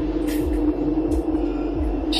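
Eerie ambient drone: a steady low hum with soft low thuds about twice a second.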